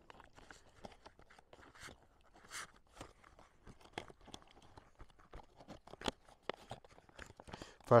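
Foil-lined dehydrated-meal pouch being handled and pressed shut at its top, giving scattered, irregular crackles and crinkles.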